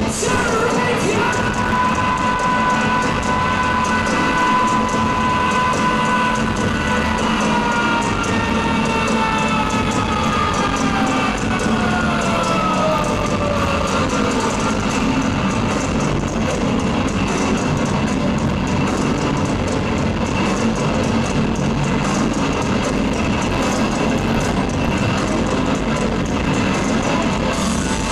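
A heavy rock band playing live and loud, a steady wall of guitars and drums. About a second in, a long high note starts and holds for several seconds, then slides slowly downward until about halfway through.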